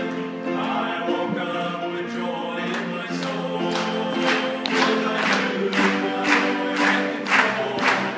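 Men's gospel vocal trio singing a Southern gospel song in harmony. Hand claps on the beat, about two a second, join in about three seconds in.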